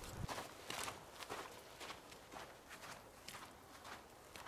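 Footsteps of one person walking on a snow-dusted forest path at a steady pace, about two to three steps a second, growing fainter as the walker moves away.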